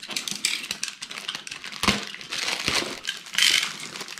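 Thin clear plastic bag crinkling and crackling as it is pulled and torn open off a boxed product, in irregular crackles with a sharper snap about two seconds in.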